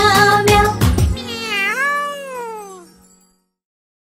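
Backing music of a children's song ends about a second in, followed by one long cartoon cat meow that rises and then falls in pitch before fading away.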